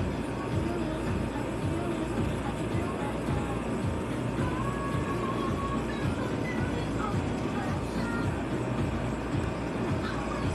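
A small handheld air blower runs steadily, blowing wet ink across a tumbler's surface, with faint music underneath.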